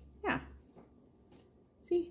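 A small dog gives a single short whine, falling steeply in pitch, about a quarter second in, followed by a few faint light clicks.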